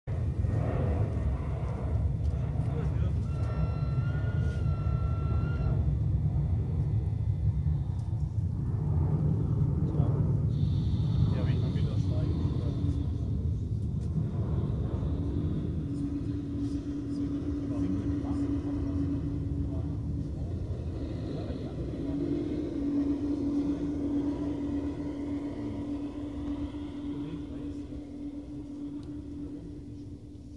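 G-scale model electric locomotive and train running on garden railway track: a steady low rumble of wheels and drive that fades as the train moves on, a brief horn signal a few seconds in, and a steady hum through the second half.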